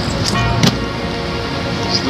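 Background music over a steady low hum, with one sharp thump about two-thirds of a second in as a duffel bag is tossed down onto a concrete garage floor.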